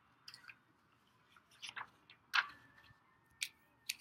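Sheets of paper being handled and shuffled: a few short rustles and crinkles scattered through, the loudest a little past halfway.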